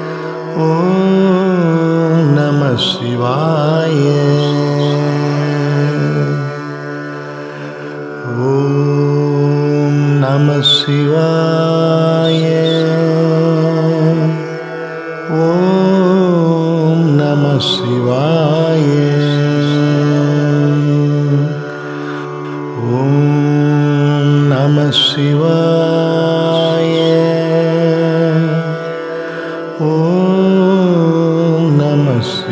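Tamil devotional chant to Shiva: a sung mantra over a steady drone, repeated in phrases of about seven seconds, each ending in a short dip, with a brief high click partway through each phrase.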